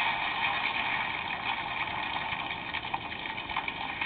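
A steady, tinny rushing roar of a sound effect from a television programme's soundtrack, with little bass, as from a small speaker.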